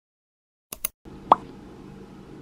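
Two quick clicks, then a short plop sound effect that glides down in pitch, over a faint steady room hiss.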